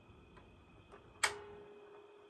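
Automatic turntable's tonearm mechanism engaging: a couple of faint clicks, then one sharp click a little over a second in, followed by a short steady hum as the arm lifts from its rest to swing over the spinning record.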